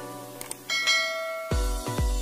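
A notification-bell chime sound effect rings out about two-thirds of a second in, just after a couple of light clicks, over intro music. About three-quarters of the way through, an electronic dance beat with heavy bass kicks comes in.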